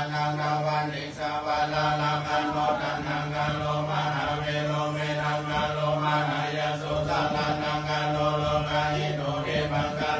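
A group of voices chanting Buddhist Pali verses in unison, a steady monotone recitation held on one low pitch with brief breaks for breath.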